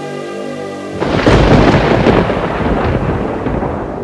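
Music with held tones stops about a second in for a sudden loud clap of thunder, which rumbles on and slowly fades over the next few seconds.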